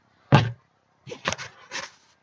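A single sharp knock against a laptop, then several short scratchy rustles as hands handle its built-in webcam, peeling off the tape that covered it.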